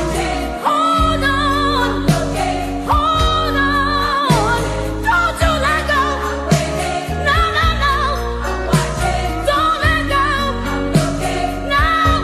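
Old-school gospel song: singing with heavy vibrato over sustained bass notes and a regular beat.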